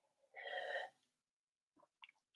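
A person drinking water from a glass: one short, breathy gulp lasting about half a second, a third of a second in, then faint clicks near the end.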